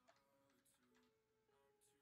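Near silence, the voice microphone gated off, with only the faintest trace of background music.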